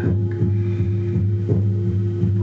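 A steady low drone of several held tones with a regular throbbing pulse, played as background to a gong bath and light-machine session.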